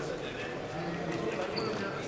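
Several people talking at once, indistinct and echoing in a large sports hall, with a few light knocks on the court and a short high squeak about one and a half seconds in.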